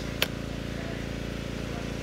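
A small engine running steadily in the background, with a single sharp click about a quarter second in.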